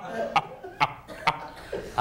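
Laughter from the studio audience at a joke, in about three short, sharp bursts roughly half a second apart.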